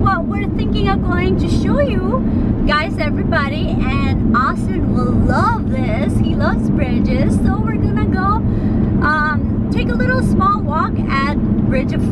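A woman singing, her voice wavering with vibrato, over the steady low rumble of a car cabin on the move.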